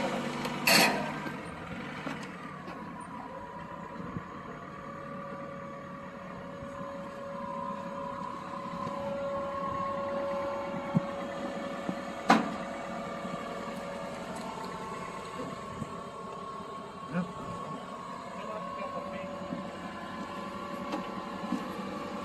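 A motor vehicle's engine idling steadily, with a held whine over its hum. There is one sharp click about twelve seconds in.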